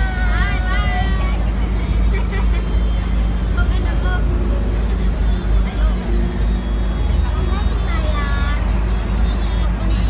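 Open-top double-decker sightseeing bus's engine running with a steady low rumble, with people's voices rising over it at the start and again about eight seconds in.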